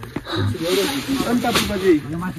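A man's voice talking over a scratchy, hissing rustle as a jute sack is handled and its strap pulled.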